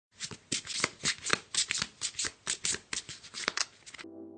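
Sound effect of playing cards being shuffled and snapped: a quick, irregular run of crisp card flicks, about four or five a second.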